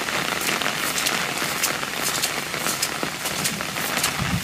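Steady rain falling on wet ground and puddles, a continuous hiss with many small drop ticks.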